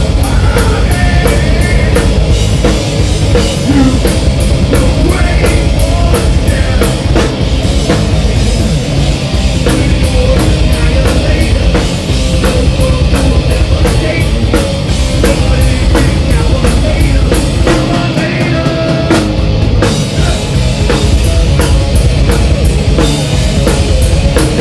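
Live heavy metal band playing loud and without a break: electric guitar over a drum kit, with steady cymbal strikes.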